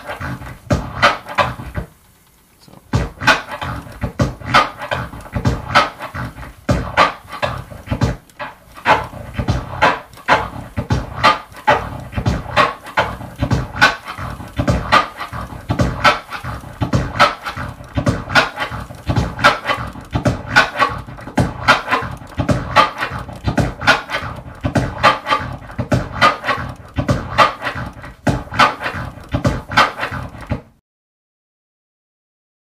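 Turntable scratching of a kick-and-snare sample in a steady rhythm: forward strokes of the record broken by a tear pause, and back strokes chopped by three quick crossfader clicks (a tear and triplet-click orbit). It drops out briefly about two seconds in.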